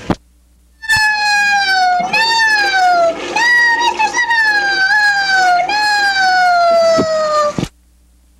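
High, squeaky voice wailing in about four long cries, each sliding down in pitch. The cries start about a second in and stop shortly before the end.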